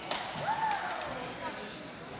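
Indistinct voices and chatter echoing in a large gymnasium, with one sharp knock at the very start and a single drawn-out tone that rises and falls about half a second in.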